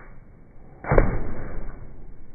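A sudden loud whoosh about a second in, fading away over the next second.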